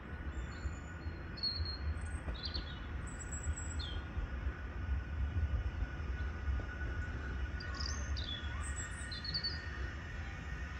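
Small birds chirping and calling in short, high notes scattered through, over a steady low rumble.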